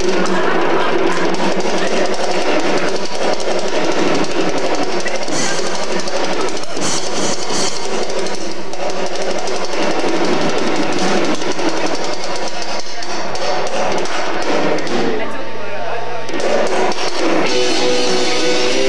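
Live rock band playing loudly, a dense mix of electric guitars, bass, keyboards and drums. Near the end it thins out, and plain guitar chords come through.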